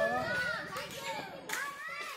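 Several excited voices calling and chattering over one another, with a sharp louder call about one and a half seconds in.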